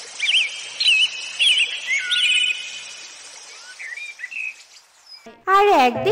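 Nature ambience of chirping, whistled bird calls over a steady outdoor hiss, with the calls busiest in the first couple of seconds. About five and a half seconds in, bright children's cartoon music starts.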